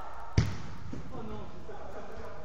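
A football kicked once: a single sharp thud about half a second in, followed by faint players' voices.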